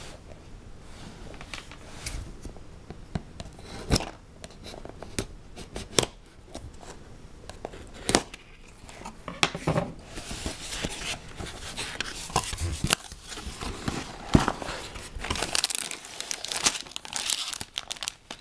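A cardboard LEGO set box being opened by hand: the flap tearing open and the cardboard rubbing and clicking. Near the end, plastic bags of LEGO pieces crinkle as they are pulled out.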